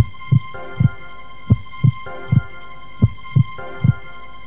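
News-bulletin music bed: low, heartbeat-like thuds in groups of three, repeating about every second and a half, over a held synth tone.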